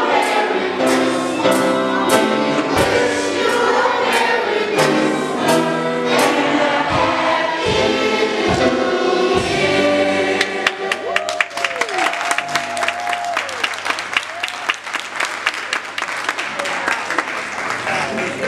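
Gospel choir singing over a steady beat, with a violin playing along. About ten seconds in the song ends and the audience breaks into applause with a few whoops.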